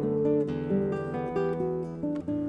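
Background classical guitar music: plucked notes entering one after another and ringing over held lower notes.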